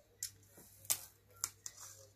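Paper and washi tape being handled and pressed onto a planner page: four sharp clicks and taps, with a brief rustle near the end.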